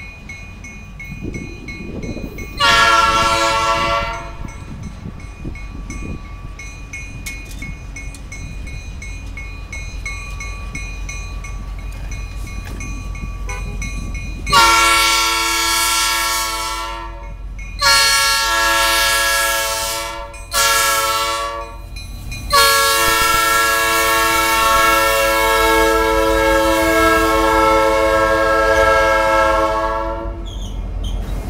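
Diesel freight locomotive air horn: one blast about three seconds in, then, from about halfway, the grade-crossing pattern of long, long, short, long, with the last blast held as the locomotive comes close. A low engine and rail rumble underneath builds as the train approaches.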